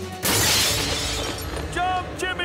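Window glass shattering: a sudden crash about a quarter second in, fading over the next second.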